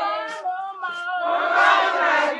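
A group of women chanting and singing together, several voices overlapping.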